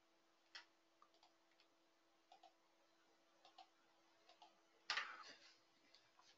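Near silence: a few faint computer mouse clicks over a low steady hum, with a short, slightly louder noise about five seconds in.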